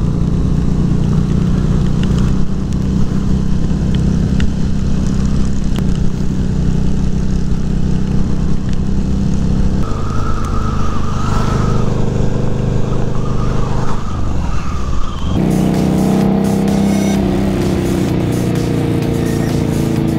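Harley-Davidson V-Rod's V-twin engine running steadily at road speed, with heavy wind rush on the microphone. About fifteen seconds in the sound cuts abruptly to a different pitched sound.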